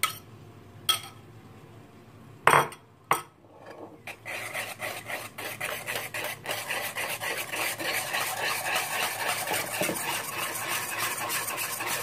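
Two sharp knocks, then, from about four seconds in, a wire whisk beating a runny banana muffin batter in a large bowl: a steady, rapid scraping and clinking of the wires against the bowl.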